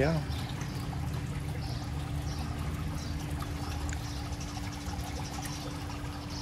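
Swimming-pool water trickling steadily, over a steady low hum.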